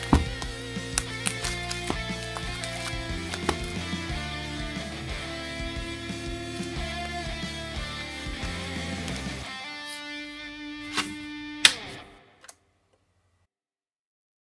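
Background music led by electric guitar over a steady bass. It thins out near the end, closes on a sharp hit and cuts off about twelve seconds in.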